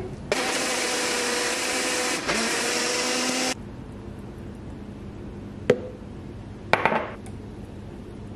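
Electric blender running for about three seconds, blending frozen fruit, juice and greens into a smoothie: a loud, steady motor sound with a brief dip midway, which cuts off abruptly. After a quieter pause there is a single sharp click, then a short clatter near the end.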